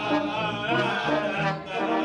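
German brass band playing live, with tuba, rotary-valve tenor horns and trombone. The bass line steps from note to note under the sustained horn parts.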